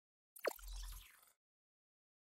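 Motion-graphics sound effect for an animated logo: one quick falling 'plop' tone about half a second in, with a short low rumble under it.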